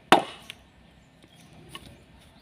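A bolo (machete) chopping a bamboo pole on the ground: one hard, sharp strike just after the start, a light tap about half a second later and a faint knock near the end.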